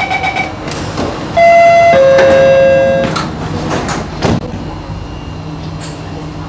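MRT train door-closing warning chime, a loud two-note falling tone with the second note held about twice as long, then the train's sliding doors running shut and closing with a knock about four seconds in.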